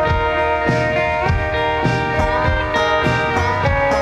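Live indie rock band playing: electric guitars holding long notes that glide between pitches, over bass and drums.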